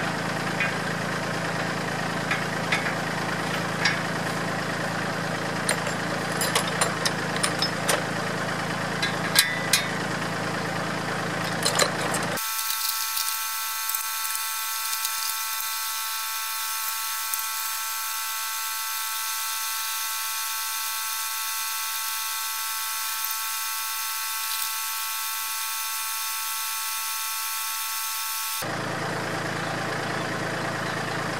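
Kubota compact tractor engine idling steadily while metal clicks and clanks come from the subsoiler being pinned to the three-point hitch. About twelve seconds in, the sound changes abruptly to a steady high whine of several even tones with no low hum. The idle returns near the end.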